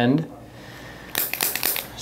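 Handheld chiropractic adjusting instrument firing a rapid run of sharp clicks against the foot, starting about halfway through and lasting about a second.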